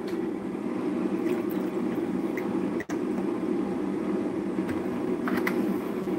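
Milk poured from a plastic gallon jug into a glass measuring cup, over a steady low background hum. The sound cuts out for an instant about three seconds in.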